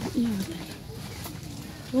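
A dove cooing, a few short low notes.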